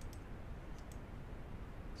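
A few faint computer clicks, about three quick ones, over a low steady background rumble.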